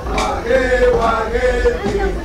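Several voices chanting together in long held notes that bend slowly up and down, with a few sharp knocks between phrases.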